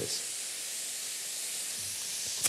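San Marzano cherry tomatoes sizzling in a frying pan: a steady, even hiss.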